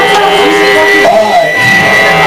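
Loud live band music, distorted, made of long steady held tones with a wavering pitched line moving over them.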